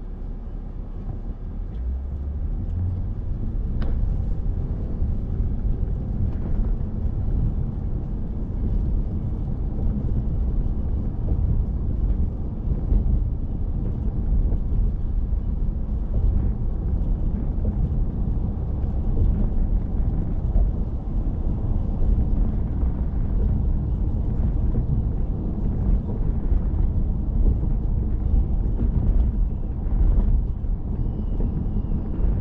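A car driving along a city road: a steady low rumble of road and engine noise that grows louder over the first few seconds, then holds level.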